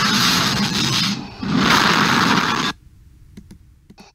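Two loud, harsh bursts of rushing noise, each just over a second long, with a short gap between them. The sound cuts off suddenly a little under three seconds in, and a few faint clicks follow.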